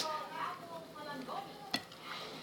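Close-up eating sounds: wet chewing of rice and chicken barbecue, with one sharp click from the dishes near the end.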